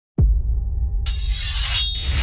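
Logo-sting sound effect: a sudden deep bass hit that drops steeply in pitch opens it, with a low rumble held underneath. About a second in, a bright shattering rush of noise comes in and cuts off just before the end.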